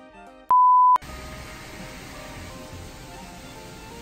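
A single loud, pure electronic beep lasting about half a second, half a second in, cutting into light background music. After it the music carries on more quietly over a steady hiss.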